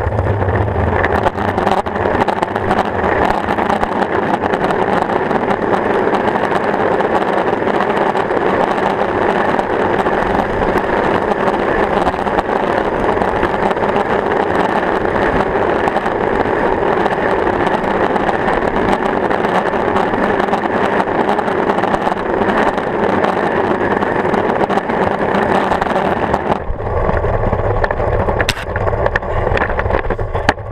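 Longboard's urethane wheels rolling fast over rough asphalt, a loud, steady roar heard right at the wheel. It dies down about 26 seconds in as the board slows and stops, with a sharp click a couple of seconds later.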